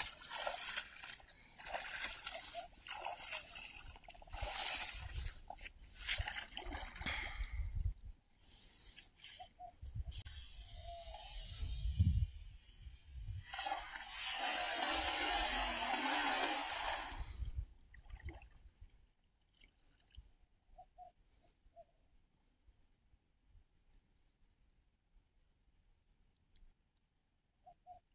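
Water sloshing and splashing around the legs of a man wading in a shallow creek with a cast net. About twelve seconds in comes a loud low thump as the net is thrown. A rush of splashing follows for about four seconds as the net spreads and lands on the water, then it goes mostly quiet as the net sinks and is drawn in.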